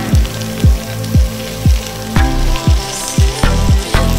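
Garlic and dried shrimp sizzling as they fry in a steel pan, under background music with a steady beat of about two kick-drum hits a second.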